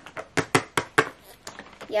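Small plastic toy pet figures tapping and clicking against a wooden tabletop as they are set down and moved, a quick series of sharp taps.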